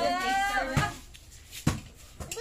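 A person's drawn-out vocal sound, slowly rising in pitch, ends about a second in. Two sharp knocks of a cleaver blade on a wooden cutting board follow, about a second apart, the second one the louder.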